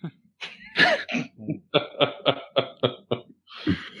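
A man laughing over a podcast microphone: scattered chuckles, then a quick run of about eight short, evenly spaced 'ha' pulses, ending in a breathy exhale.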